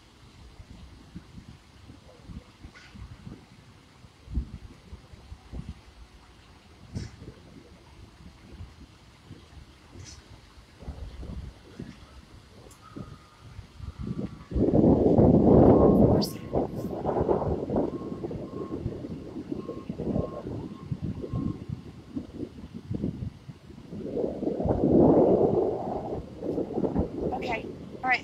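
Wind buffeting a phone's microphone outdoors: uneven low rumbling throughout, with two strong gusts, one about halfway through lasting a couple of seconds and another near the end.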